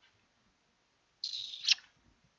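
A short, sharp breath from a person close to the microphone, about a second in, like a sniff. The rest is near silence.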